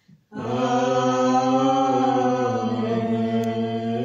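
A low, man-pitched voice singing a slow hymn or chant. After a brief pause for breath at the start, it holds one long note that rises and falls slightly in pitch.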